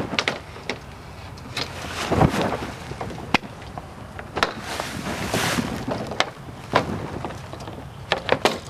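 A solar screen's frame being pushed into a window frame and seated behind its lips, with scattered sharp clicks and knocks as it catches and settles. Softer scraping and rubbing run between the knocks.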